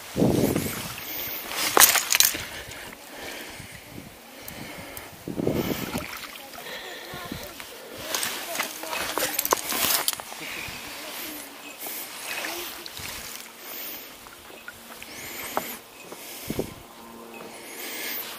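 A landing net sloshing and splashing in the loch's water at the start, then scattered knocks and rustles as the fly rod, reel and line are handled.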